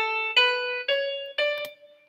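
Noteflight's built-in piano sound playing the top of a D major scale: A, B, C sharp and D, one note every half second, rising, with the high D held and fading away near the end. The C sharp comes from the D major key signature, not a written sharp, and the scale sounds correct.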